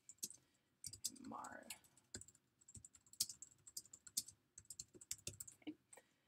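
Typing on a computer keyboard: faint, irregular key clicks as a short line of text is entered.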